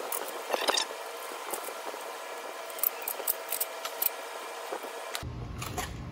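A few sharp metallic clicks from a socket wrench on the cylinder head bolts of a Briggs & Stratton L-head engine, with a quick run of about five clicks around the middle.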